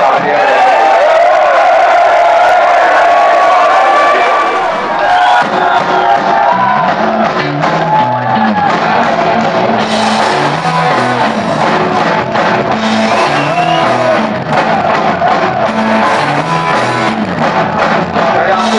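A punk rock band playing live, heard through loud crowd noise. At first the crowd is cheering and shouting. About six seconds in, a bass guitar starts a stepped line, and the full band with drums comes in soon after.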